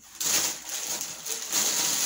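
Rustling and crinkling of a bag's packaging being handled, a continuous noisy rustle.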